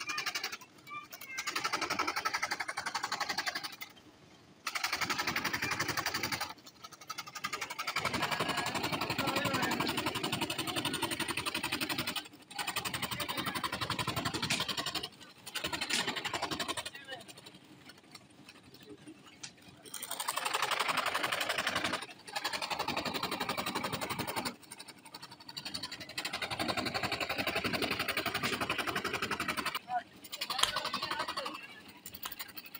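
Table-mounted jigsaw (chapaka) cutting curved fretwork shapes in a thin wooden board, its reciprocating blade buzzing in stretches and dropping away several times between cuts.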